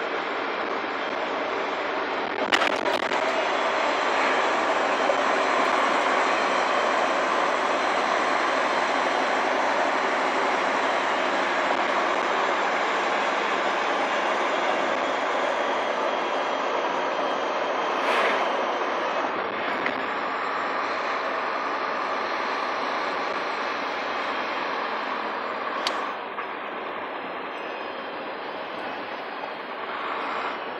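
A truck's cab noise on the move: steady engine and road noise with a rattling cab. A few short knocks stand out, one early and others past the middle and near the end.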